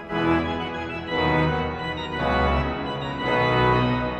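Romantic pipe organ by Théodore Puget playing loud full chords with a strong bass, four chords about a second apart.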